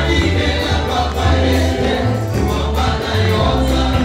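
Gospel music: a choir singing over a strong, moving bass line.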